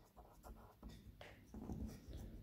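Felt-tip marker writing on paper: a few faint, short scratches as a word is written.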